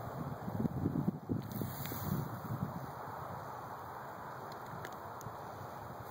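Wind buffeting the microphone, with rustling: gusty, uneven low rumbles for the first couple of seconds, then a steadier hiss.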